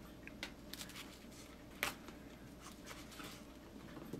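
Faint, irregular small clicks and light handling as metal tweezers lift a thin brass photo-etch fret in a cardboard box, with one sharper click a little before the middle.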